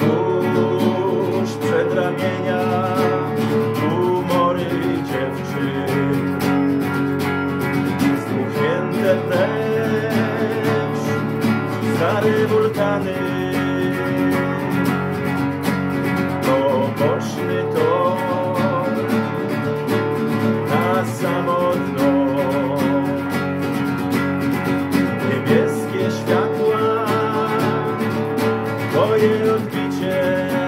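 A song played on a strummed acoustic guitar with an electric guitar alongside, and a man singing over them; the chords change about every four seconds.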